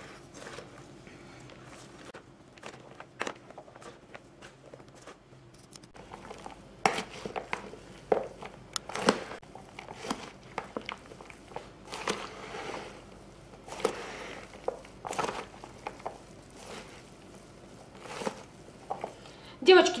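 Dressed shredded squash, carrot and onion salad being tossed and mixed in a plastic basin, by hand and with a metal slotted spoon: irregular rustling and squelching with occasional small clicks. It is quiet at first and grows louder and busier after about six seconds.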